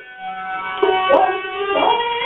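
Rajasthani (Marwari) folk song music: a voice sliding up and down in pitch over sustained instrument tones, in an old recording with the highs cut off.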